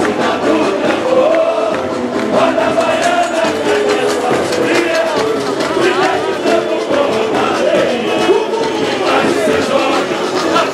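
Live samba school parade music: a mass of voices singing the samba-enredo together over the percussion, loud and continuous.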